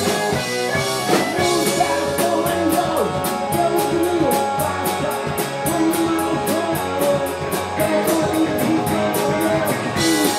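Live blues-rock band playing: electric guitars over a drum kit, with a steady cymbal beat coming in about two seconds in.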